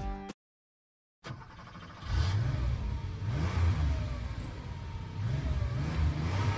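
Background music cuts off just after the start; after a second of silence a car engine starts up and revs up and down several times, getting louder about two seconds in.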